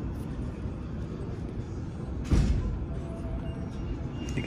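Steady low background hum of a shop aisle, with a single sharp thump a little past halfway.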